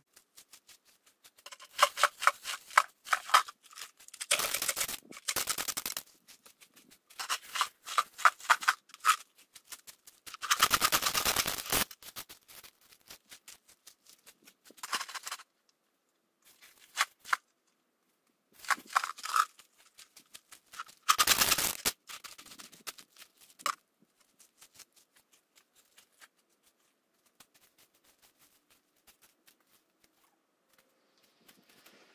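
Loose gravel stones rattling and crunching, handled and shifted around a plastic bucket: several quick runs of clicking clatter and a few louder, longer scrapes, stopping a little over twenty seconds in.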